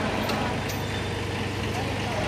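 Kubota B6001 mini tractor's small diesel engine idling steadily.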